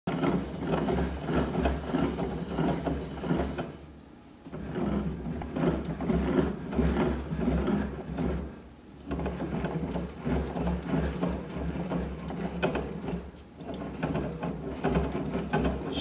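A hand-operated bat-rolling machine pressing its rollers into a 2021 DeMarini The Goods BBCOR baseball bat as the bat is worked through, breaking it in. It makes a rhythmic mechanical rolling rumble that pauses briefly about four, eight and a half, and thirteen and a half seconds in.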